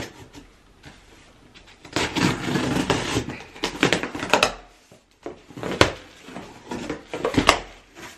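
A cardboard shipping box being opened: a rasping stretch of packing tape being slit and peeled about two seconds in, then sharp crackles and knocks as the cardboard flaps are pulled apart.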